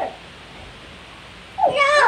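A short voiced sound at the start, then about a second and a half in a loud, high-pitched, wavering cry from a child begins and carries on.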